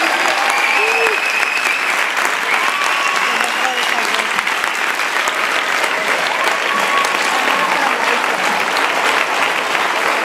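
Audience applauding and cheering, with voices calling out over dense, steady clapping.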